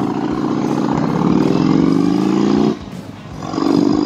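Harley-Davidson Road King's V-twin engine accelerating away from a stop. The engine note climbs, drops with a gear change about two and a half seconds in, then climbs again in the next gear.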